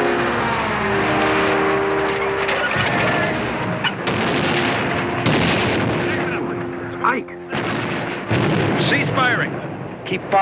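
Film battle soundtrack: sustained music chords fade into artillery fire, with several booming explosions in the second half.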